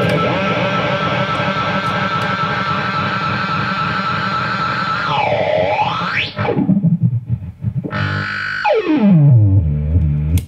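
Overdriven electric guitar through a Blackstar valve combo's dirty channel, with a delay pedal in front of the amp so the repeats pile into a dense, distorted wash. About five seconds in the delay's pitch swoops down and back up, and near the end it dives steadily in pitch as the pedal is adjusted. This is the awfully ridiculous sound of a delay hitting the preamp, not a usual analog delay tone.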